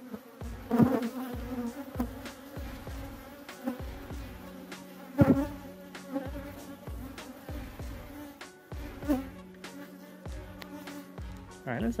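Honeybee colony buzzing steadily at an open hive, a dense hum from many bees. A couple of sharp knocks cut through it, about one second in and about five seconds in.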